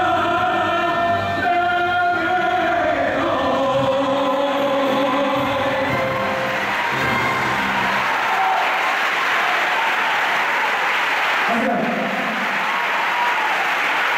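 A male singer and orchestra hold the final note of a song, which fades out over the first few seconds; audience applause then fills the rest, with a man's voice starting near the end.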